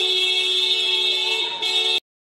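A vehicle horn held in one long steady blast. It breaks off briefly about one and a half seconds in, then sounds again.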